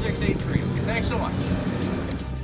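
A man speaking over background music with a steady beat; the voice stops a little past halfway and the music carries on.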